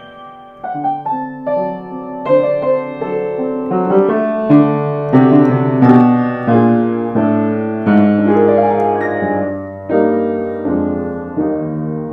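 Welmar A4 upright piano, 110 cm tall, played with both hands in slow held chords that start softly, swell to their loudest around the middle and ease off toward the end. It sounds slightly out of tune and slightly flat overall.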